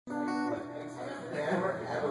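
An acoustic guitar chord rings for about half a second, then the murmur of voices.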